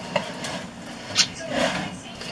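Kitchen handling sounds: two short light clicks about a second apart, then a brief soft rustle near the end.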